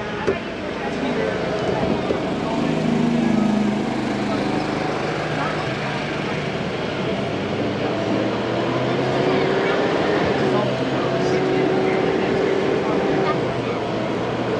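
Open-air tour tram rolling along: a steady drone of its drive and tyres, with indistinct voices of passengers underneath.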